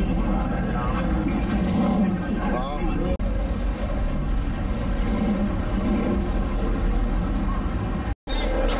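Voices of a crowd talking over the low rumble of a car's engine and exhaust as it rolls slowly past, with a brief break in the sound about three seconds in.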